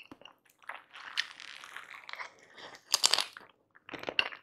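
Close-miked chewing of a mouthful of tahu gimbal with bean sprouts and cabbage: a run of crisp crunches, the loudest about three seconds in.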